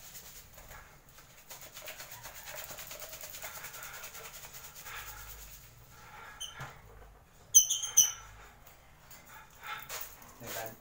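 Vitamin powder being shaken in a plastic jar to mix it, a rapid rustling for the first few seconds. Near the middle, two sharp, high chirps from caged African lovebirds, half a second apart, are the loudest sounds.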